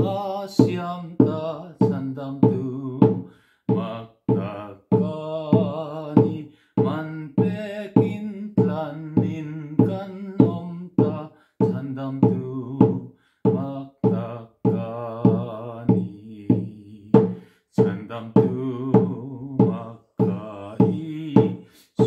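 A man singing a hymn in Mizo, his voice wavering on held notes, while he beats a steady rhythm on a small hand-held drum with a stick.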